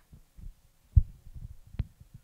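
Handling noise from a handheld microphone being picked up and gripped: a run of low thumps and bumps, the strongest about a second in, and a sharp click near the end.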